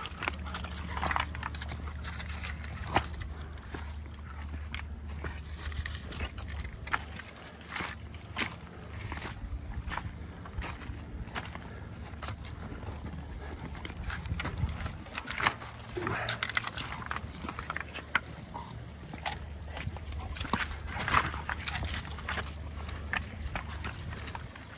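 Footsteps and a dog's paws crunching on lakeshore pebbles: irregular clicks and scrapes of stone on stone, over a steady low hum.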